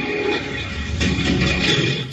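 Soundtrack of an Intel commercial: dense music mixed with other sound, cut off abruptly at the end as the next clip begins.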